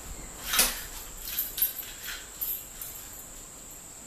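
A few short clicks and rustles of handling, the sharpest about half a second in, over a steady faint high-pitched tone.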